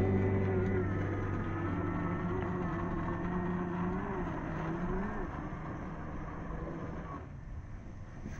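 Sequre 1800kv brushless outrunner motor and drivetrain of a Traxxas TRX-4 RC crawler running under throttle: a steady whine whose pitch wavers as the throttle changes about four to five seconds in, then dies away near the end.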